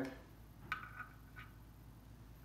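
Three faint, small clicks from a hand handling the brass overspeed-trip adjusting knob on top of a TG611 turbine governor, the first with a brief metallic ring.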